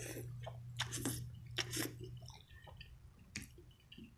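A person chewing a mouthful of spaghetti close to the microphone, with several sharp wet mouth smacks in the first two seconds and fainter ones after.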